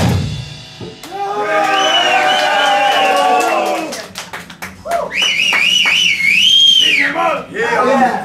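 A live rock band's music cuts off right at the start, followed by the crowd shouting, a few claps, and a long wavering whistle about five seconds in.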